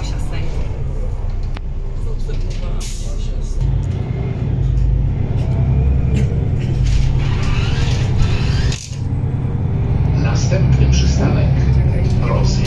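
Cummins ISB6.7 six-cylinder diesel of a Solaris Urbino 12 III city bus, heard from inside the passenger cabin as the bus drives along. Its low drone grows louder about three and a half seconds in, and the sound drops out briefly near nine seconds in.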